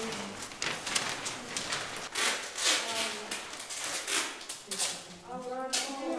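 Paper ballots rustling and slapping on a table as they are sorted by hand, in quick irregular rustles, with voices talking under them and one voice clearer near the end.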